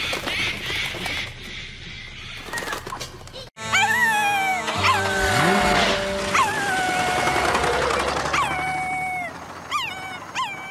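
Cartoon dog howling: several long howls that each leap up in pitch, then slide down and hold, over background music. Before them come a few seconds of quieter, indistinct sound.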